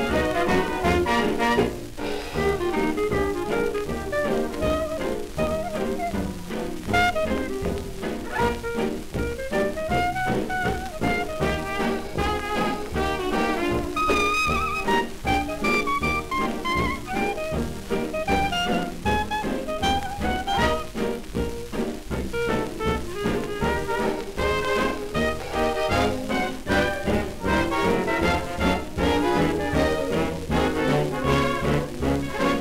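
1929 hot dance orchestra record playing an instrumental passage: brass and reeds over a steady bass beat, with no vocal.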